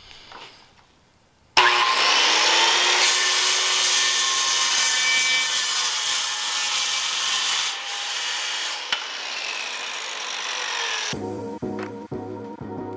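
Porter-Cable circular saw starts suddenly about a second and a half in and cuts across a wooden board, its motor whine under the noise of the blade in the wood. The sound eases off about eight seconds in, and the saw winds down shortly before the end.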